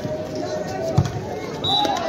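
A volleyball struck once by a player's hand about a second in, a single sharp thump over the shouting and chatter of the crowd.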